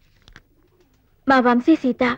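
A woman's voice speaking film dialogue, starting about a second and a quarter in after a near-silent pause with a faint click.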